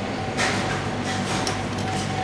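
Steady mechanical hum of kitchen machinery with a thin, constant high tone, and a couple of faint light taps, one about half a second in and one near the end.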